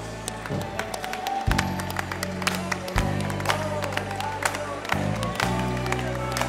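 Live gospel worship band playing, with sustained low keyboard and bass chords that change every second or two, and scattered hand claps.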